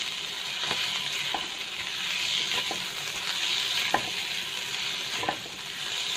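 Sliced roasted pork with shallots and garlic sizzling in oil in a wok as it is stir-fried with a spatula. A steady high sizzle, with about five short knocks of the spatula against the pan.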